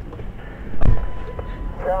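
Low rumble of a vehicle driving, heard from inside the cab, with a sharp click about a second in followed by a steady beep lasting nearly a second, the kind of tone a two-way radio gives before a transmission; a radio voice begins at the very end.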